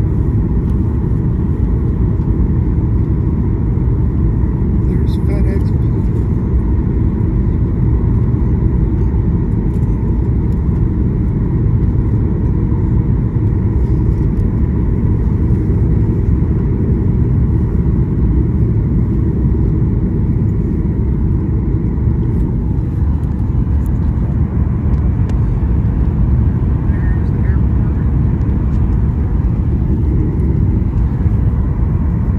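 Steady, loud cabin noise of a jet airliner, engines and rushing air heard from inside the cabin, as the plane descends on approach with its flaps extended.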